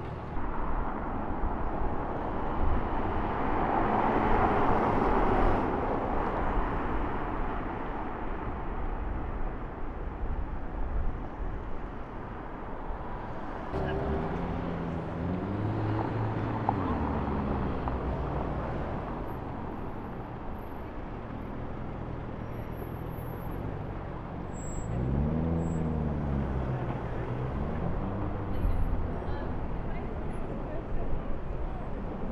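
Lamborghini Urus twin-turbo V8 revving up and falling back twice as it pulls through traffic, over a steady rush of city traffic that swells for a few seconds near the start.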